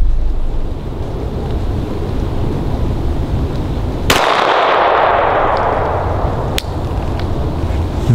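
A single 9mm pistol shot from a Glock 19 about four seconds in, its report echoing and fading over about two seconds, then a fainter sharp crack a couple of seconds later. Wind rumbles on the microphone throughout.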